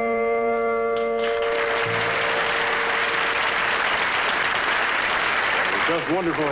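A country band's held final chord rings out and stops about a second in, giving way to studio audience applause.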